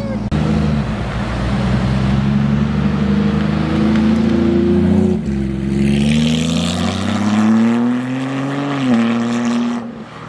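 Sports car engines accelerating past. For about five seconds there is a steady, slowly rising engine note. After an abrupt break, a Porsche 911 GT3's flat-six climbs in pitch and then falls sharply about a second before the end.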